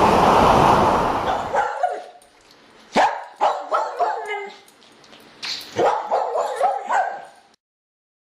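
A steady rushing noise of wind and surf fades out in the first two seconds. A dog then barks in short, sharp barks: a few about three seconds in, then a quicker run of barks near the end that cuts off abruptly.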